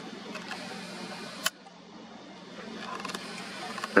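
Faint steady background hiss with a single sharp click from the handheld camera about a second and a half in, after which the hiss drops quieter.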